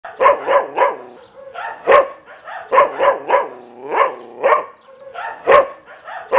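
A dog barking repeatedly, in quick runs of two or three sharp barks about a third of a second apart, with short pauses between runs.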